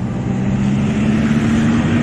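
Road traffic passing close by: a motor vehicle's engine hum, rising slightly in pitch, over steady tyre and road noise.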